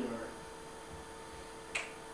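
A steady electrical hum with several fixed tones, and one short sharp click about three-quarters of the way through.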